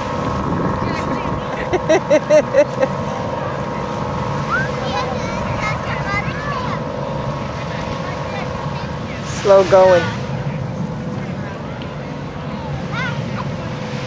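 Beach ambience: scattered voices and calls of people in and around the water over a steady background rumble with a constant hum. A louder shout or call stands out about two-thirds of the way in.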